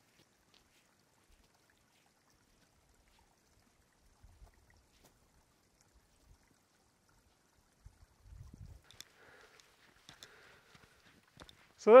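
Near silence: quiet outdoor ambience with a few faint, scattered ticks, a brief low rumble about eight seconds in, then a faint hiss until a man begins to speak at the very end.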